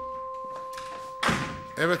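A panelled door shutting with a single thunk about a second in, over one held note of background music. A man says a short word near the end.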